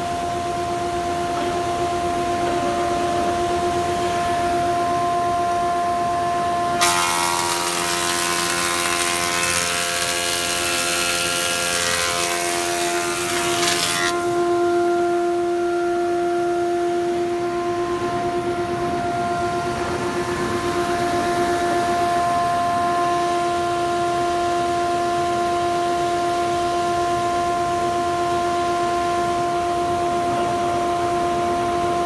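Rockwell/Delta 24-inch planer, Model 22-503, running with a steady hum. About seven seconds in, a board goes through and the cutterhead planing it adds a loud, harsh noise for about seven seconds, then stops, leaving the running hum.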